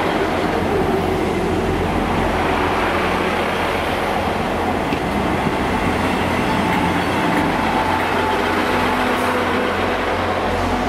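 GWR Intercity Express Train (Hitachi Class 800-series multiple unit) moving slowly along the platform. It gives a steady low mechanical hum with wheel and running-gear noise, unchanging in level.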